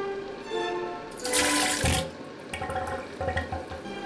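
Soft bowed-string background music, with a brief loud rush of water a little over a second in, lasting under a second, followed by softer, uneven low noise.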